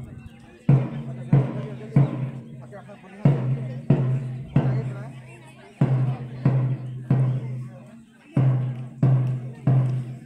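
A deep drum struck in a steady cadence, three beats about two-thirds of a second apart and then a short pause, over and over, beating time for a group drill.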